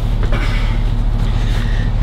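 Clothing rustling and shuffling as a person climbs into an SUV's third-row seat, over a steady low hum.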